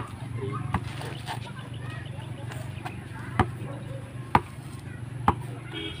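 Basketball dribbled low on a concrete road: sharp single bounces about a second apart, with a longer gap near the middle.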